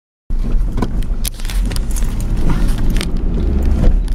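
Car driving along a road, heard from inside the cabin: a steady low rumble of engine and tyres with several short clicks and rattles.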